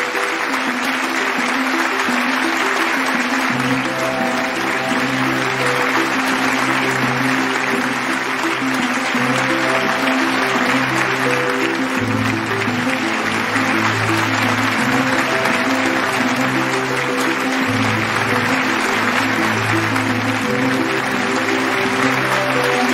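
An audience applauding steadily, many hands clapping at once, over music with a stepping bass line.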